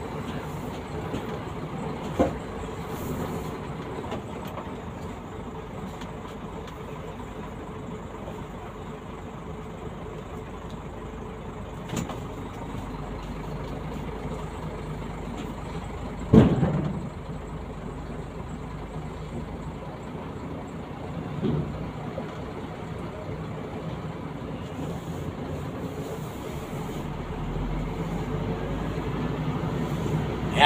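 Steady low rumble of a car's engine and tyres heard from inside the cabin while it drives slowly. A single loud thump comes a little past halfway, with a few lighter knocks elsewhere.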